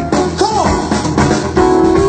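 Live band playing a groove with drum kit and guitar; a note bends up and back down about half a second in, and another note is held near the end.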